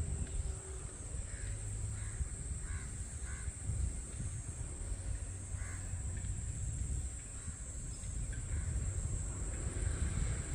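A few short bird calls, spaced a second or more apart, over a low steady rumble.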